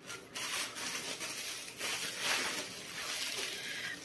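Knife scraping across bread as a sandwich is spread, an uneven rubbing and scraping that swells and fades, with a few small clicks.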